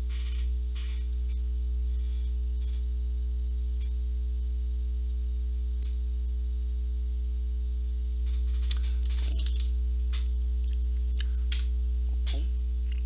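Steady low electrical hum with its even overtones, the loudest sound throughout. Over it, a few faint computer-keyboard clicks, mostly in the last few seconds, as a terminal command is typed and entered.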